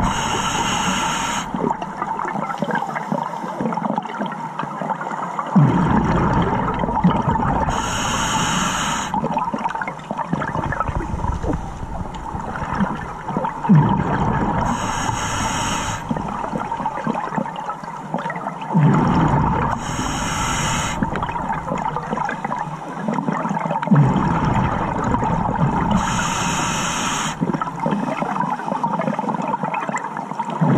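Water gurgling and hissing in a slow repeating cycle: a short high hiss about every six seconds, each followed by several seconds of low bubbling rumble.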